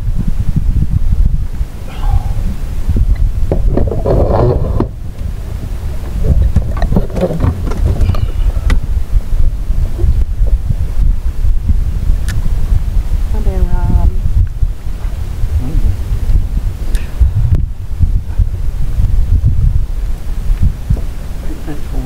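Wind buffeting the microphone, a continuous low, gusting rumble, with brief muffled snatches of voices now and then.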